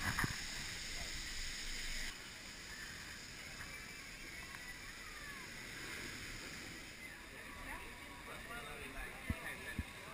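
Faint, muffled outdoor background with distant voices, picked up by a GoPro camera riding a chairlift. There are two soft knocks near the end.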